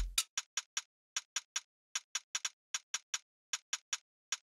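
Solo drum-machine hi-hat from Logic Pro's Ancient Space kit playing a syncopated pattern of short, crisp ticks, about four a second. The tail of a kick drum dies away at the start.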